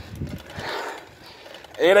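Low, steady road noise and faint knocks from a bicycle rolling over asphalt, picked up by a phone mounted on the bike. A man starts speaking near the end.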